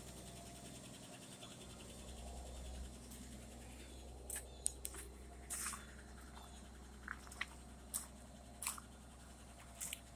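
Quiet: a faint low hum with scattered light clicks and scuffs of footsteps on a concrete driveway, starting about four seconds in.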